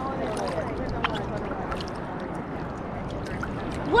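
Sea water lapping and sloshing around an action camera held at the water's surface: a steady wash with a few small splashes.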